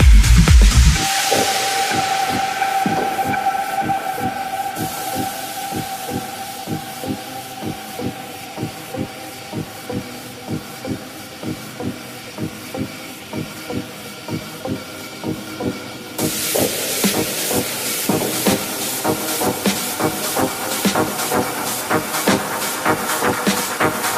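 Tech house DJ mix in a breakdown: the kick drum and bass drop out about a second in, leaving a held synth note, a rising hiss and a light beat. About sixteen seconds in, bright hissing hi-hats come back in and the track builds.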